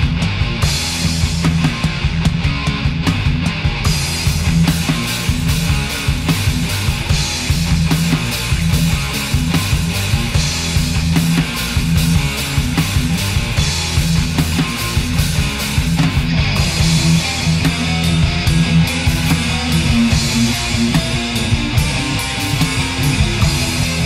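Heavy/stoner metal recording: distorted electric guitars, bass and drums playing a steady, driving passage.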